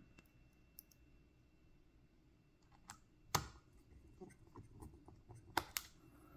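Faint, scattered clicks and taps of a small Phillips screwdriver working a battery screw into a laptop's chassis, the screw being started but not tightened all the way. The sharpest click comes about three and a half seconds in, with two more close together near the end.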